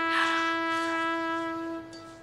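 Dramatic background music: a trumpet-like wind instrument ends its melody on one long held note that fades away near the end.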